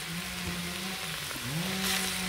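Beef pieces sizzling with a steady hiss as they fry dry in a steaming earthen pot over a wood fire. Under it runs a steady low hum.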